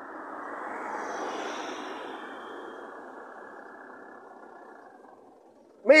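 A road vehicle driving past on the street: engine and tyre noise swells to its loudest about a second in, then fades steadily away over the next few seconds.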